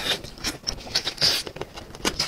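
A person chewing roast chicken close to a clip-on microphone: irregular wet mouth clicks and smacks, several a second.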